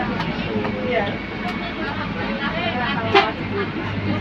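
Passengers talking inside a moving bus, over the steady drone of its engine and road noise in the cabin. One voice is briefly louder about three seconds in.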